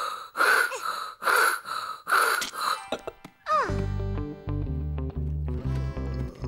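Handsaw cutting wood in rasping back-and-forth strokes, about two a second, stopping about three seconds in. A falling glide follows, then background music with a steady bass line.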